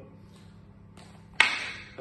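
Escrima sticks clacking together once as a stick strike is met by a block, a sharp wooden crack with a short ring about a second and a half in.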